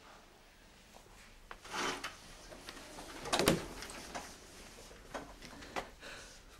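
Quiet handling sounds with a few faint clicks, and a wooden door being opened with a knock about three and a half seconds in.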